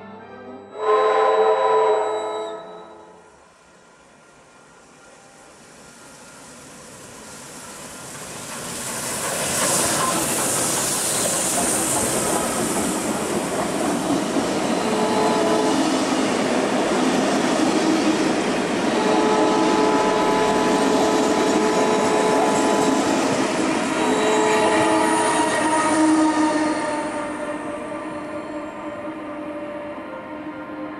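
The steam whistle of Beyer-Garratt AD60 6029 gives one short salute about a second in. The articulated steam locomotive then draws near and passes loudly, and its carriages roll by with wheels squealing steadily on the curve before the train fades away.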